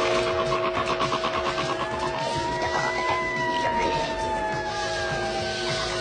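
Movie soundtrack mixing a held chord of steady tones with a high tone that slides up for about three seconds and then slowly falls, plus a fast fluttering pulse in the first two seconds.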